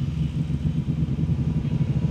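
A loud, deep rumble with a fast, choppy flutter.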